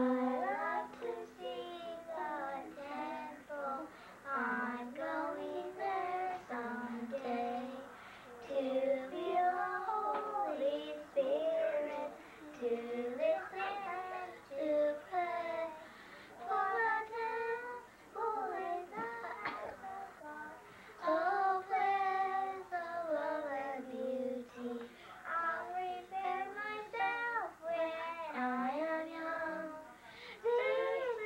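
Young girls singing a song together, their voices carrying through with short breaths between phrases.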